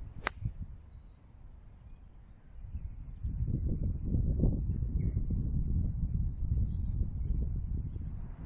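Sharp click of a golf iron striking the ball just after the start. From about three seconds in, wind buffets the phone's microphone with a loud, uneven low rumble.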